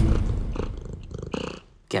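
A Siamese cat purring, a low pulsing rumble that fades out about a second and a half in.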